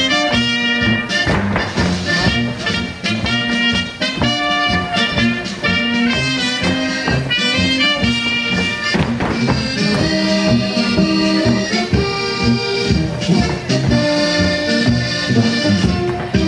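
Brass-band folk dance music with accordion, trumpets and trombones over a steady oom-pah bass beat, played for couples dancing.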